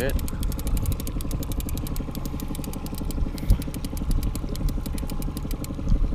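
Boat's outboard motor running steadily at trolling speed, with one sharp thump about halfway through.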